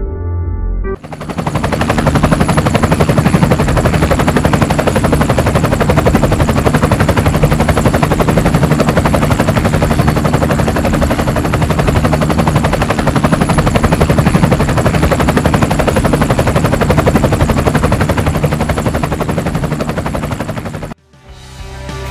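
Helicopter rotor sound effect: a loud, fast, even chopping over a low engine drone. It starts about a second in and cuts off abruptly near the end.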